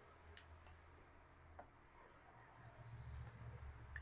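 Near silence, broken by about four faint, brief clicks as a sieve bed canister is handled.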